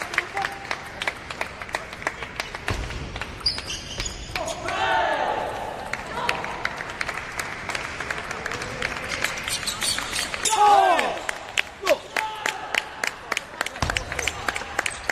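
Table tennis balls clicking off rackets and the table in quick, irregular ticks during rallies. Loud shouts from players cut in twice, about four seconds in and again about ten seconds in, the second the loudest.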